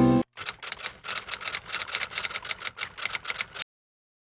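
Typing sound effect: a rapid run of sharp key clicks, about six a second, that stops abruptly shortly before the end.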